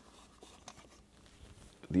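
Near silence with a few faint, short handling ticks and light rubbing as hands come off a small wooden box. A man's voice begins at the very end.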